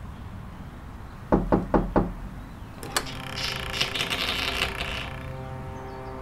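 Four knocks on a wooden door, then a sharp click of the latch and a long, drawn-out creak as the door swings open.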